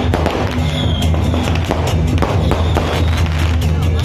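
Firecrackers going off in many sharp, irregular cracks, over loud music with a steady deep bass.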